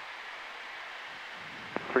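Steady rushing noise of a Cessna Citation jet's cockpit in flight during descent, with a short click near the end.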